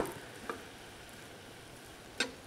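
Faint, even rustle of dry ground toast crumbs being stirred and toasted in a frying pan with a silicone spatula, with one light tap about half a second in.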